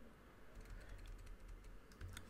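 Computer keyboard: a run of faint, quick key clicks as text is deleted with the backspace key.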